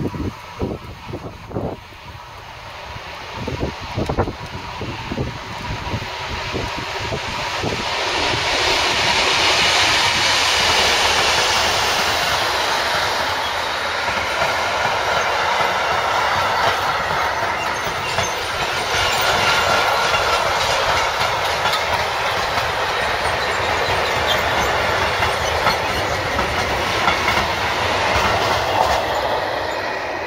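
Freight train hauled by DSB class MZ diesel locomotives passing close by: the sound grows from a distant rumble with a few low thumps to a loud, steady rolling of covered freight wagons over the rails, with rapid wheel clicking.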